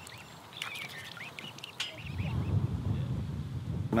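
Mute swan cygnets peeping: a few short, wavering high calls in the first half, followed by a low rumble in the second half.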